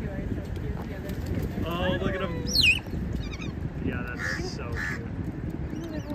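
Crows cawing several times over a steady low rumble of wind and water, with a sharp, high squeal that swoops down in pitch about two and a half seconds in as the loudest call.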